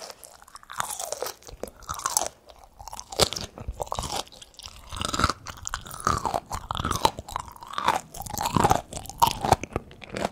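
Close-miked biting and chewing of crisp pickled okra: a bite near the start, then wet, crunchy chews about two a second.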